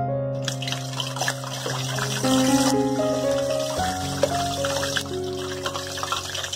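Plantain bajji deep-frying in hot oil: a steady sizzle that starts about half a second in, under background piano music.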